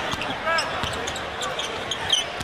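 Arena game sound: a basketball being dribbled on a hardwood court with repeated sharp bounces, a brief sneaker squeak about a quarter of the way in, over a steady murmur of crowd voices in a large hall.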